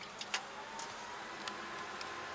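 1954 Chevy 210's straight-six engine idling, heard faintly from inside the cabin as a steady low hiss with a faint high tone and a few scattered light clicks.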